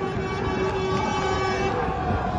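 A horn sounds one long steady note that stops shortly before the end, over a low rumble.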